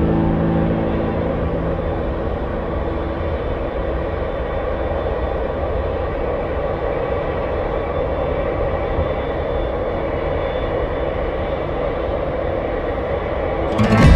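Steady low rumble of an airliner under tow across the apron, with no pitch changes or sudden events.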